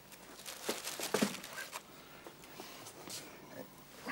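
Paper rustling and crinkling in short, scattered rustles, the clearest about a second in, as a carnation buttonhole is lifted out of its tissue-paper wrapping.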